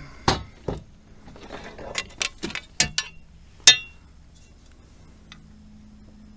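A string of sharp knocks and clinks as a freshly caught smallmouth bass is handled on a kayak to be measured. The loudest comes about two-thirds of the way in, with a short ring after it, followed by a quieter stretch.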